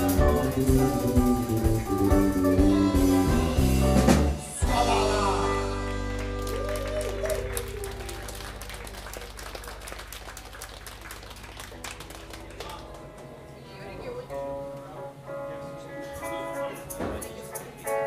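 Live band with electric guitars, bass and drums ending a song on a final hit about four seconds in, the low bass note ringing out. Audience applause follows, and a guitar plays a few scattered notes near the end.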